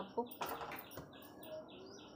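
Birds chirping faintly in a quick, even series of short high notes, about four a second. A few soft knocks of a steel spoon against a steel rice pot and lunch box come at the start and about half a second and a second in.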